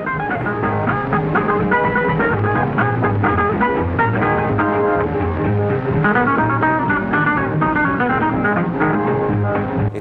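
Jazz guitar music: a quick, plucked guitar melody over a bass line, with the muffled top end of an old recording.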